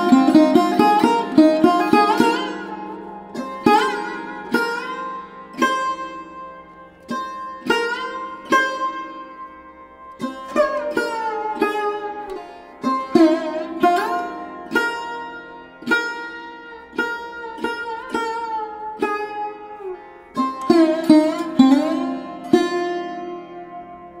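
Music: a plucked string instrument playing a slow, free-flowing melody of single notes with sliding pitch bends, over a steady drone.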